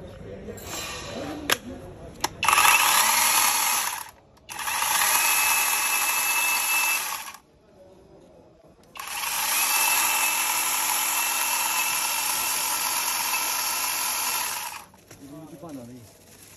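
Cordless 12-inch mini chainsaw's electric motor and chain running freely, with no cutting, in three runs: about a second and a half, then about two and a half seconds, then about six seconds, with the trigger let go briefly between them. A couple of sharp clicks come just before the first run.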